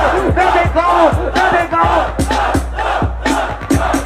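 A crowd of young people shouting and cheering together, with drawn-out 'oh' cries, over a trap-funk beat with deep, falling bass kicks about twice a second.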